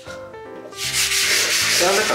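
A sponge scrubbing a wet bathroom mirror, starting a little under a second in and then going on steadily. It is working Sunpole acid toilet cleaner into built-up limescale on the glass.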